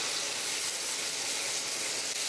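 Tomato-and-spice masala paste sizzling steadily in hot oil in a non-stick kadhai as it is fried down on medium flame, stirred with a silicone spatula.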